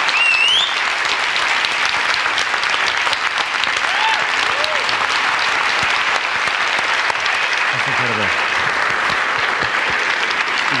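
A large audience applauding steadily, with a few high rising whistles in the first second and another about four seconds in. A voice calls out near the end.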